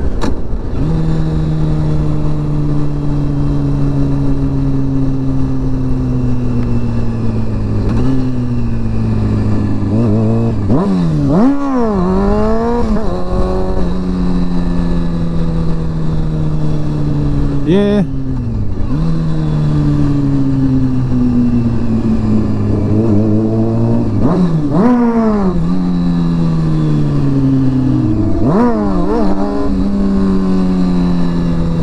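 Honda CBR sportbike engine heard from the rider's seat while riding. Its pitch sinks slowly as it eases off, broken four times by hard bursts of throttle that send the revs sharply up and back down.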